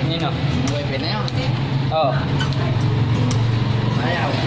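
Voices of people talking over a steady low hum.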